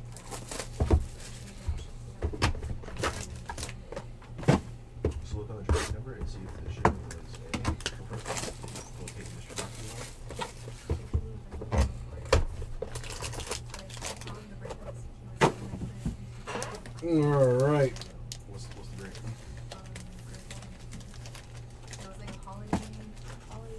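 Handling noise from a cardboard box of 2015 Panini Playbook football cards and its foil packs, with irregular sharp clicks and rustles as the box is turned over and the packs are laid out. A brief wavering hum comes about seventeen seconds in.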